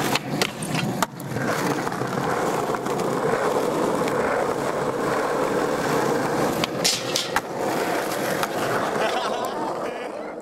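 Skateboard wheels rolling over rough asphalt, a steady grinding rumble, with a few sharp clacks of the board, three in the first second and two more about seven seconds in. The rolling fades out near the end.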